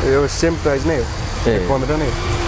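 A man speaking, over a steady low rumble.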